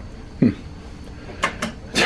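Two or three short clicks about one and a half seconds in from a wall-mounted light-switch button being pressed, switching off the cabin lights, over quiet room tone.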